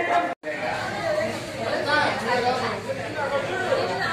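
Indistinct chatter of several people talking in a reverberant room, the sound cutting out completely for a moment about half a second in.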